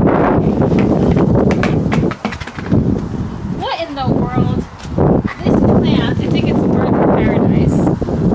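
Wind buffeting the microphone in a loud, low rumble that eases briefly twice, with a few short snatches of a woman's voice around the middle.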